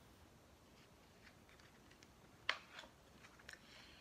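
A page of a picture book being turned: one short, sharp paper sound a little after halfway, followed by a few faint ticks, against near silence.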